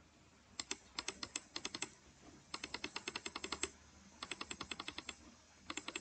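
Computer keyboard typing, faint, in several short bursts of rapid key clicks.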